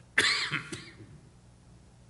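A man coughs once into his hand, a sudden loud cough just after the start that lasts about half a second, and then the room goes quiet.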